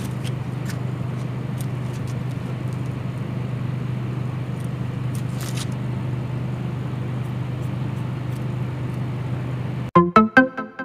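Electric hair clippers buzzing steadily during a haircut, with a few faint clicks.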